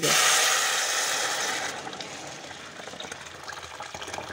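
Water poured from a kettle into a pot of frying vegetables: a loud rush as it hits the hot pan, easing after about two seconds into a quieter steady pour.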